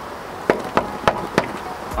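Knuckles knocking on a door: four sharp knocks, about three a second.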